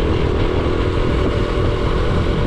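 Motorcycle engine running steadily while riding along a road.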